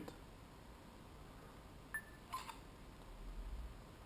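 Faint sounds from an HTC Titan phone in camera mode as it focuses: a short click with a brief tone about halfway through, followed a moment later by another short sound. A faint low rumble follows near the end.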